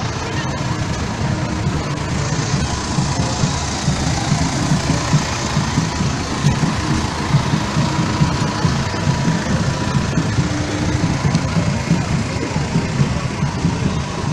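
A farm tractor's diesel engine running close by, a steady low rumble, with crowd chatter and some music mixed in.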